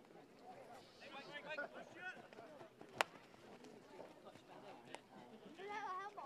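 Distant shouting voices of players calling across a grass shinty pitch, with one sharp crack about three seconds in and a fainter click near the end.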